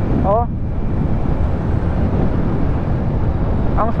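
Steady wind and road rush on the microphone of a Honda Click 125i V3 scooter cruising at about 45–50 km/h. The scooter's engine is quiet, with no distinct engine note standing out above the wind.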